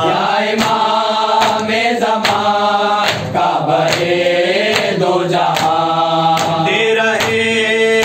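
A group of male voices chants a Shia noha lament in unison, led by one voice. Open-hand chest-beating (matam) slaps keep a steady beat, about one every 0.8 seconds.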